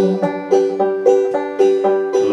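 Banjo picked two-finger style, an even run of plucked notes at about four a second.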